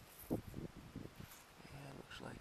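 Faint crackles and small knocks of soil and stone being handled as a stone arrowhead is picked out of plowed dirt, several in quick succession in the first second, the loudest about a third of a second in.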